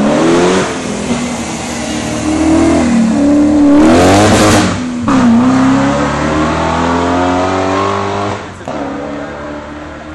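A BMW E34 5 Series engine is run hard up a hill climb. It revs up through the gears, with the pitch falling back at a shift about five seconds in and again about a second and a half before the end. It is loudest about four seconds in.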